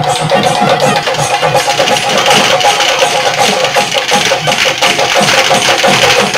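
Festival percussion music: drums beaten in a fast, steady rhythm, with a sustained held tone running above them.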